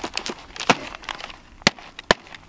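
Sheets of printer paper rustling as they are handled at an open paper box, with a few sharp taps; the loudest tap comes a little after one and a half seconds in.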